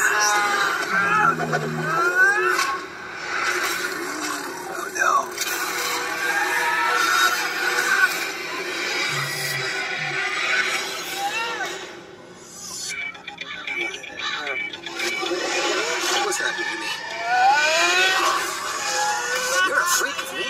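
An animated film trailer's soundtrack playing from a screen's speakers: music with sound effects.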